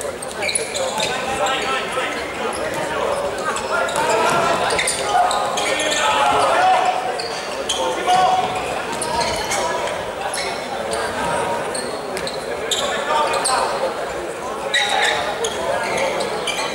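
Futsal ball being kicked and bouncing on the court, with players calling out and crowd chatter, all reverberating in a large indoor sports hall.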